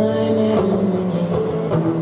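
Electric guitar playing held chords, moving to new chords about half a second in and again near the end.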